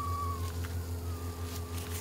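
Steam whistling thinly from the spout of a boiling Kelly kettle; the tone sinks in pitch and fades out about half a second in. A steady low hum runs underneath throughout.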